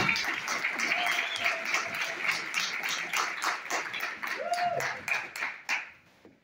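Audience applauding, dense rapid clapping that thins out and dies away near the end, with a few voices among it.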